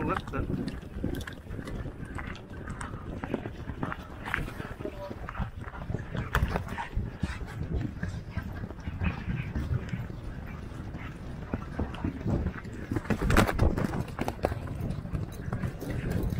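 Hoofbeats of a galloping steeplechase horse on turf, heard from the saddle, with wind rumbling on the microphone. The hoof strikes come as a dense, irregular patter, loudest around three-quarters of the way through.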